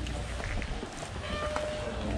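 Outdoor background of a gathering of cyclists: a steady low rumble with faint voices in the distance and a few light clicks.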